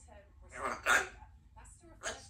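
Congo African grey parrot vocalising: two quick, loud, voice-like sounds about a second in.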